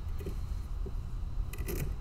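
Old, ragged tip tape being peeled off a fencing foil blade by hand, tearing off in small pieces with short crackly rips, the loudest cluster near the end. It keeps breaking because it is worn and shredded.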